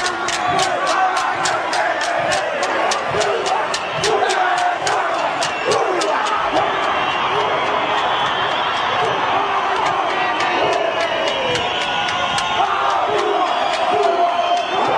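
Aboriginal war cry: wooden sticks clacked together about three times a second under shouting men's voices and a stadium crowd. The clacking fades out about eight seconds in, leaving the crowd and voices.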